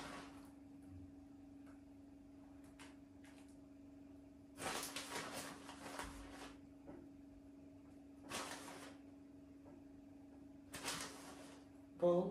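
Plastic bag of grated cheese rustling in a few short bursts as cheese is sprinkled over a pizza, over a steady low hum.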